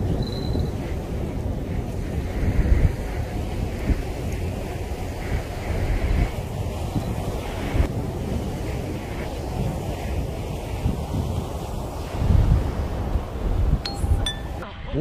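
Wind blowing across the microphone: a steady low rush with stronger gusts a few times, over the wash of the sea.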